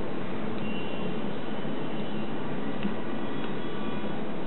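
Steady, even hiss with a faint low hum, unchanging throughout.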